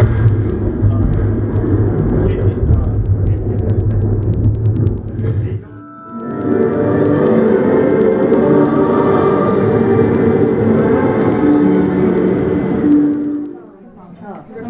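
Theatrical show effects over a sound system answering the wave of a wand: a low rumble for about six seconds, then, after a brief break, a swell of music with held notes that fades near the end.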